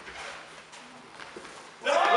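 A few faint, light clicks and scuffs from a sabre bout in a large echoing hall, then a loud, drawn-out shout breaks out near the end as the fencers close.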